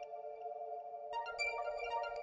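Background music with steady held chords; a few higher notes come in just past halfway.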